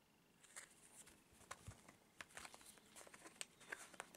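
Faint, scattered little clicks and rustles of a cardboard 2x2 coin flip being handled against the plastic pocket sheet of a coin folder page.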